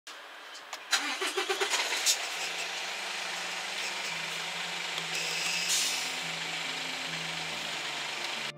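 A semi-truck's diesel engine is started with the dash push button. The starter cranks in rapid even pulses for about a second, then the engine catches and settles into a steady idle.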